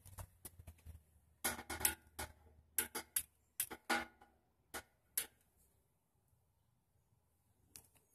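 Faint, sharp clicks in small quick clusters over about five seconds, a long utility lighter being clicked at a portable propane grill's burner to light it, then stopping.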